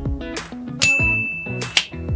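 Background music with a bright ding sound effect a little under a second in, its single high tone ringing on for over a second.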